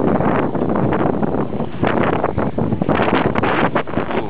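Wind buffeting the camera's microphone: a loud, steady rushing noise, with a few brief knocks near the end.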